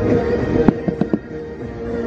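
Fireworks going off over the show's music: a quick cluster of four sharp bangs between about two-thirds of a second and just over a second in, after which the music briefly drops back.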